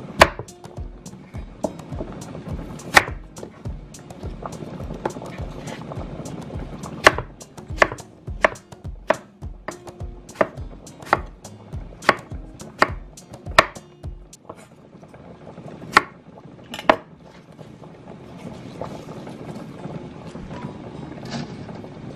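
Chef's knife cutting through an apple and knocking on a wooden cutting board: a series of sharp, irregular knocks, coming fastest in the middle of the stretch.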